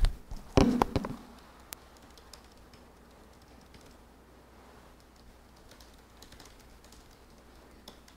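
Faint typing on a computer keyboard: small key clicks at an uneven pace, one sharper click about two seconds in.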